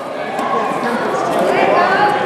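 Many overlapping voices of spectators and coaches talking and calling out at once, with no single clear speaker.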